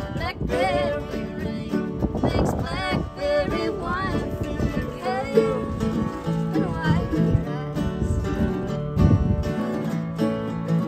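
Acoustic Americana string trio playing an instrumental passage: two acoustic guitars strumming under a picked mandolin.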